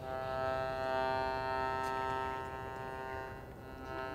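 Piano accordion holding one long chord, strongest in the first half and fading slightly toward the end.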